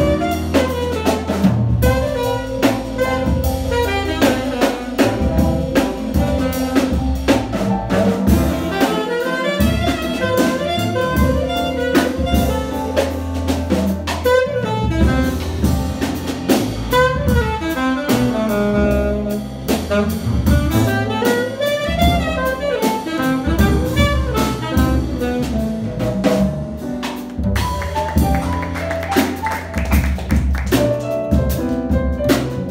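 A small jazz combo playing live: saxophones carrying the melody over double bass, a drum kit with frequent cymbal strokes, and piano.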